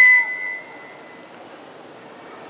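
A single high, steady ringing tone, the public-address microphone feeding back, fades out within the first second. After it there is only a faint hiss.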